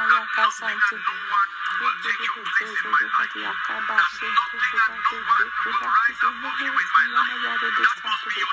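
A voice praying rapidly through a microphone in quick, fast-changing syllables, over a steady hiss and faint music.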